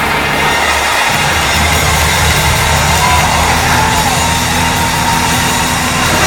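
Loud live gospel band music with drums and a steady, sustained bass line.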